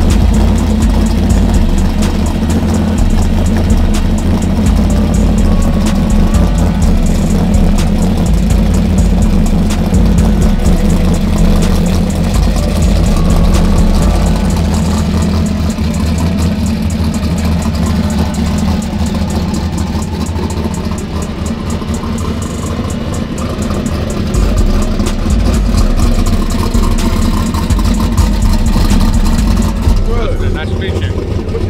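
A turbocharged small-tire drag car's engine idling steadily, with a deep low note. It dips a little in level about two-thirds of the way through.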